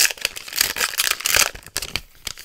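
A foil trading-card pack wrapper crinkling and tearing as it is ripped open by hand, in a run of rapid crackles that is loudest about a second in and dies down near the end.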